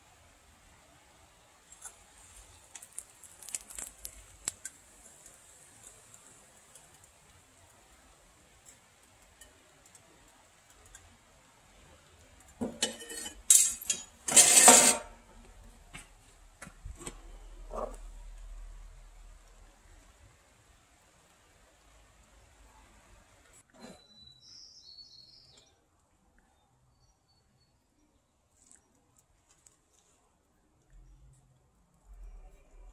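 Steel crucible tongs and a crucible clinking and scraping while molten copper is poured into a metal mould. The loudest moments are two clattering metal-on-metal scrapes about halfway through, as the hot crucible is handled and set down.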